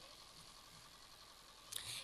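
Near silence: faint steady hiss of room tone, with a faint short noise near the end.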